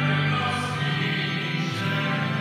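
A hymn sung to musical accompaniment, with long held notes.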